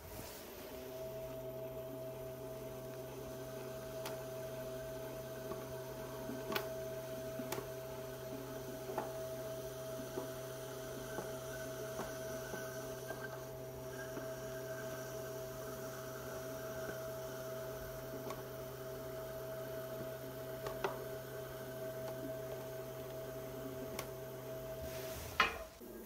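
Electric pottery wheel motor humming steadily while a wire loop trimming tool scrapes ribbons of leather-hard clay from the foot of an upturned bowl, with a few faint ticks.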